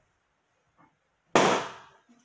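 A latex balloon popped with a thumbtack: one sharp, loud bang about a second and a half in, dying away quickly.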